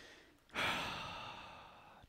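A man's long sigh out, starting about half a second in and fading away as he calms himself.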